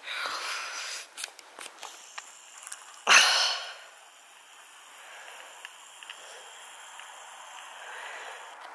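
A short, loud burst of breath from the person filming, about three seconds in, the loudest sound here. Before it come a few faint clicks and rustles; after it only a faint steady hiss.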